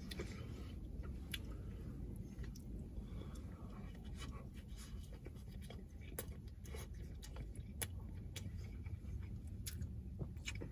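A man chewing and eating long-grain rice with his fingers: scattered faint wet clicks from mouth and fingers over a low steady rumble.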